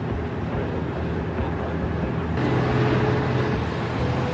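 Tugboat diesel engines running with a low, steady drone. A rushing hiss joins about two and a half seconds in, and the sound gets slightly louder.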